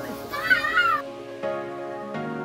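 Background music, with one short, high animal call lasting under a second near the start.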